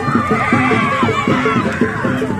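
Javanese gamelan music for the barongan, a quick even run of repeated pitched metal notes, about four or five a second, with children shrieking and yelling over it.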